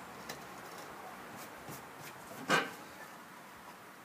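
A small carving knife scoring and paring soft pine to clear stubborn wood fibres left by gouging: faint scraping with a few light ticks and one louder cut about two and a half seconds in.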